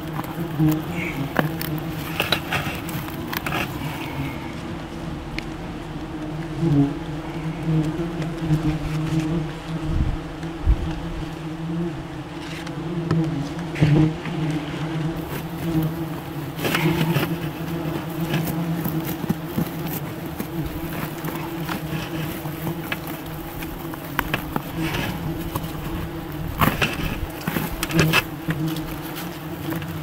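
German yellow jackets buzzing steadily in a swarm around their exposed paper nest. Scattered sharp clicks and rustles run through it as the comb is handled.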